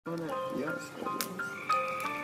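Voices and overlapping held notes at several pitches, with a few sharp cracks about a second in.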